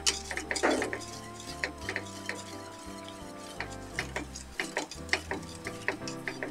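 Wire whisk stirring a thin chocolate liquid in a stainless steel saucepan, its wires clicking against the pot's sides and bottom in quick, uneven taps.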